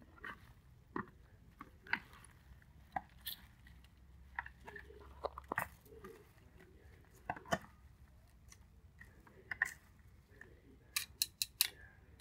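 Salad being tossed with wooden chopsticks in a plastic basin: scattered light clicks and taps among the leaves. Near the end comes a quick run of sharper clicks as metal tongs are worked in the bowl.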